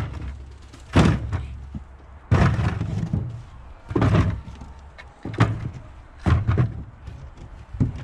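Fodder turnips dropped one at a time into a plastic bucket, each landing with a dull thud against the bucket and the roots already in it. About seven thuds at uneven intervals of roughly a second, as the bucket fills.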